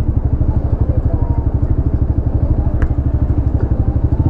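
Italika RC200's 200cc single-cylinder four-stroke engine idling at a standstill, a steady fast putter of exhaust pulses. A single light click sounds about three quarters of the way through.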